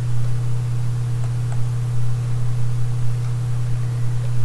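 Steady low electrical hum with a background hiss.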